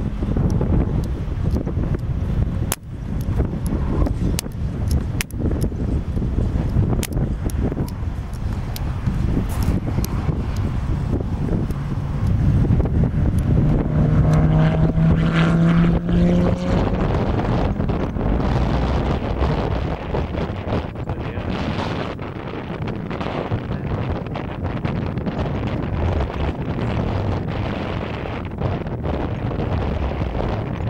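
Lamborghini Gallardo's V10 engine accelerating past, its pitch rising and loudest about halfway through. Wind buffets the microphone throughout.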